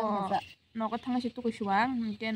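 A woman talking, with a short pause about half a second in.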